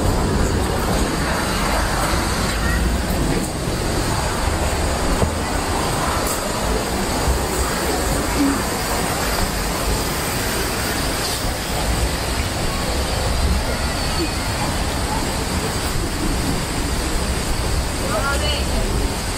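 Steady outdoor rumble and hiss with no clear rhythm, with brief faint voices of people walking nearby.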